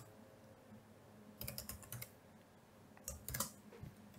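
Computer keyboard being typed on, faint, in two short runs of key clicks.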